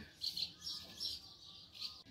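Small birds chirping: a string of short, high calls as they fly in and out of their nests in a wall.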